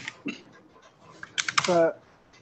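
A few computer keyboard keystrokes in the first half second, then a short spoken syllable from a man's voice near the end.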